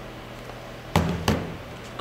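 Two sharp knocks about a third of a second apart, about a second in: an iPad mini dash mount pan being set down on a tabletop.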